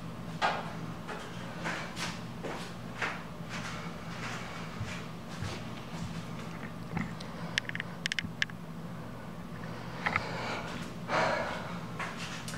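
A man's short, forceful breaths during dumbbell split squats, several in the first three seconds. Later come a few light metallic clinks and some shuffling movement, all over a steady low hum.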